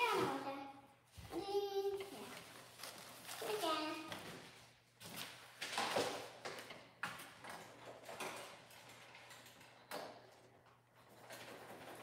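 Faint, indistinct children's voices in short utterances, with scattered light knocks and clicks between them.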